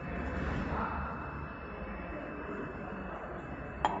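Steady hum of a jar labeling machine running, with two sharp knocks near the end as a jar is set down on the machine's steel plate.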